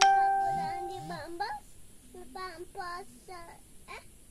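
A single bell-like chime rings out suddenly and fades over about a second and a half, followed by a child's high voice singing or calling in several short phrases.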